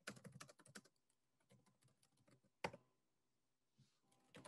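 Faint clicking of computer keys: a quick run of key taps in the first second, then a single louder click a little before three seconds in.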